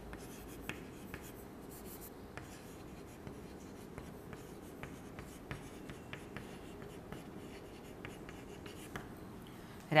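Chalk on a chalkboard as words are written: a run of faint, irregular taps and short scratches.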